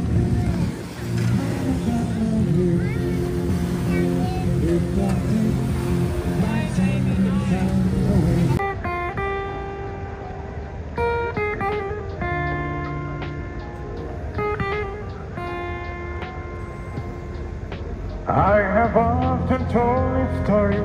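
Acoustic guitar played through a small amplifier, picking single notes and chords in a slow melody. It begins about eight seconds in, after a stretch of outdoor chatter over a steady low hum. A man's voice starts singing over the guitar near the end.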